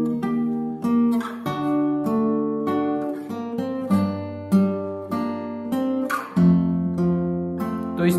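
Acoustic guitar played fingerstyle: a slow arpeggio pattern in which each bass note is followed by higher strings plucked one at a time or in pairs. The chord and bass note change about every two and a half seconds.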